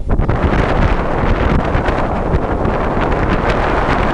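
Loud, steady rushing noise of wind buffeting the microphone, mixed with the roar of Niagara Falls, rising sharply right at the start.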